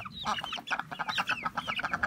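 Chickens clucking and chicks peeping in a coop, a quick run of many short calls overlapping.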